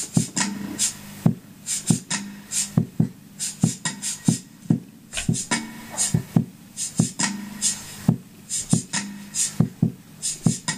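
Hugh Tracey kalimba played in a steady rhythmic pattern: sharp plucks and clicks of the metal tines, two to three a second, over low notes that ring on underneath.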